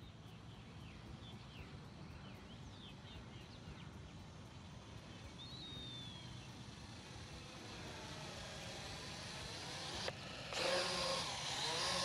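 DEERC D50 mini quadcopter's propellers buzzing, slowly getting louder as it flies in closer, with a few bird chirps early on. Near the end a sudden loud rushing noise takes over.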